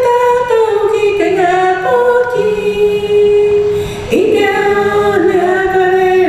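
A group of voices singing a song in long held notes that move in phrases, female voices on top with a lower voice part beneath.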